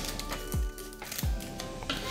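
Background music with a steady beat, and a pair of scissors snipping a foil Pokémon booster pack open near the start.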